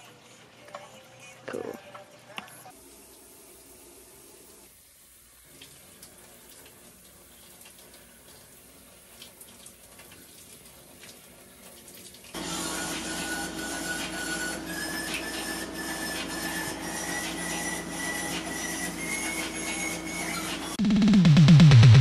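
After a quiet first half, a shower starts running about twelve seconds in: a steady hiss of spraying water with a thin whistling tone that steps up in pitch. Music comes in near the end.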